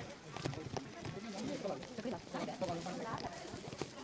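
Indistinct voices of several people talking in the background, with scattered light clicks and knocks.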